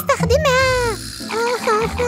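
High-pitched, wordless cartoon character voices squeaking and chattering: one long falling call, then a brief pause and a few short swooping squeaks.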